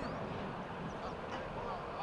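Indistinct voices calling over a steady background of outdoor noise.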